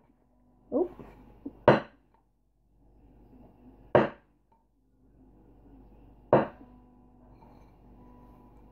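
Wooden rākau stick knocked against a hard surface during the flip: three sharp knocks about two and a half seconds apart, with a fainter tap just before the first.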